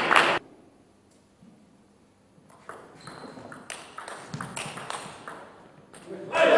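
Table tennis ball clicking sharply off bats and table in an irregular string of strikes from about two and a half seconds in. It opens with the tail of a loud burst of crowd noise that cuts off suddenly, followed by near silence.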